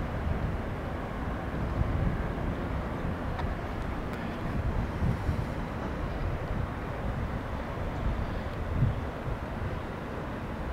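Outdoor city ambience heard from high above: a steady distant hum of traffic, with wind buffeting the microphone in gusty low rumbles that come and go.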